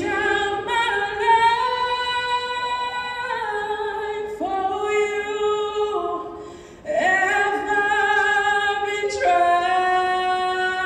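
Mixed choir of men's and women's voices singing a cappella in long held chords that move every second or two. The sound fades away between phrases about six and a half seconds in and comes back on a new chord.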